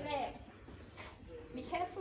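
A short falling vocal exclamation, then quiet footsteps on a stone floor, with a brief bit of voice near the end.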